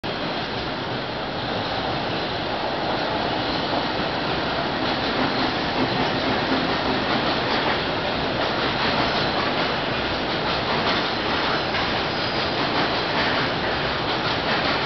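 A long freight train of container wagons hauled by an EH200 electric locomotive passing through without stopping: a steady noise of steel wheels on rails, with clicks over the rail joints.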